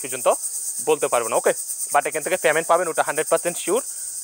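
A man talking, over a constant high-pitched hiss with a fast, even pulse to it.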